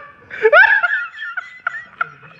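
High-pitched laughter: a few short squeals that rise in pitch, the loudest about half a second in.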